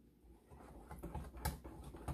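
Wire whisk stirring pumpkin pie filling in a glass bowl: faint, irregular clicks and scrapes of the whisk against the glass, starting about half a second in.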